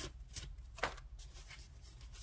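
Small paper cards being handled and slid across one another on a cloth-covered table: several short, soft rustles, the loudest a little under a second in.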